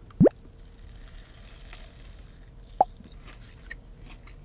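A bite into a crispy fried chicken sandwich on a grilled bun, with faint crunching and chewing. Two short rising blips like a water-drop plop stand out over it, the louder one a moment in and a smaller one near the three-second mark.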